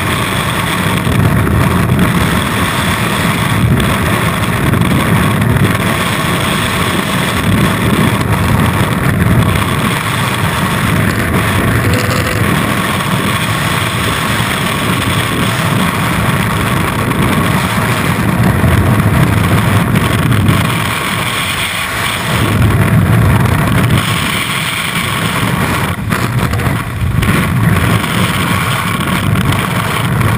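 Loud, steady rush of freefall wind buffeting a skydiver's body-mounted camera, a deep roar without pauses.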